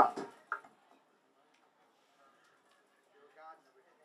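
A man's voice over a PA system says the last word of an announcement, then low, faint crowd chatter, with a brief voice about three and a half seconds in. No music is playing yet.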